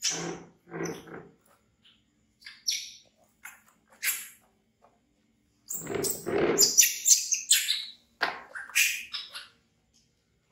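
Baby monkey screaming in fright: a few short shrill screams, then a longer run of loud, high screams in the second half.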